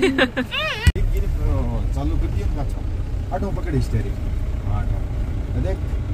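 Steady low rumble of a Mahindra vehicle's engine and road noise heard inside the cab while it is being driven, starting after an abrupt cut about a second in, with people talking over it.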